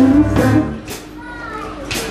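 A live band with singer, electric guitar and drums plays, then drops out for about a second near the middle, and in the gap people's voices, including children's, can be heard before the music comes back in at the end.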